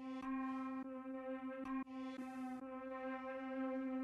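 A synth pad preset from the Native Instruments Ignition Keys plugin holding one sustained, bright note, re-struck a few times in the first two seconds.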